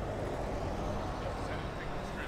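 Steady low background noise of city street traffic.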